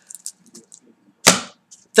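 A man's single short, sharp breath close to the microphone, a quick whoosh about a second in, after a few faint ticks.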